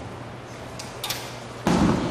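Steady low electrical hum from the PA system, with a few faint taps about a second in. Near the end comes a sudden, louder burst of knocking and rubbing noise, typical of a microphone being handled against a metal music stand.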